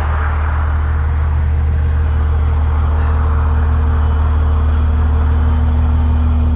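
Rollback tow truck's engine running at idle with the PTO engaged, giving a steady low rumble; a faint steady whine from the PTO-driven hydraulic system comes in about two seconds in.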